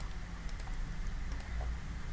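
A few light, sharp computer clicks: a pair about half a second in and another pair a little past the middle, over a faint steady low hum.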